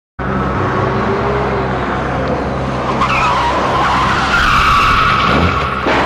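A small panel van's engine running, then its tyres squealing for nearly three seconds from about halfway through as it brakes to a stop.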